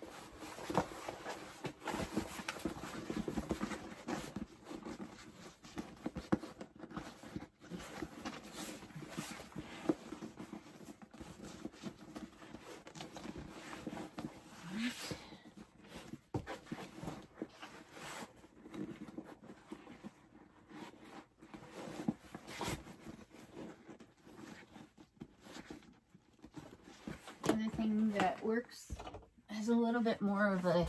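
A faux-leather and canvas handbag rustling and crinkling as it is handled and shaped by hand, with scattered small clicks and knocks. A woman's voice comes in near the end.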